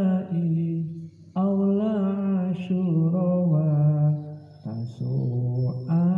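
A man chanting a classical Islamic text in the slow, melodic pesantren recitation style, with long held notes and two short breaks for breath.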